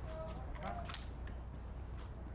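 Faint, low murmur of voices over a steady background hum, with one sharp click about a second in.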